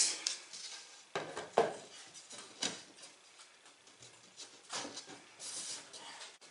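A few light knocks and taps as a thin board back panel is set into the back of a wooden picture frame and pressed down by hand, with soft handling sounds between them.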